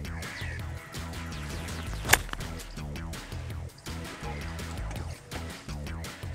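Background music with a steady beat. About two seconds in comes a single sharp crack of a golf club striking the ball on an approach shot.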